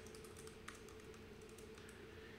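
Faint computer keyboard typing, a few soft keystrokes, one a little clearer just under a second in, over a low steady hum.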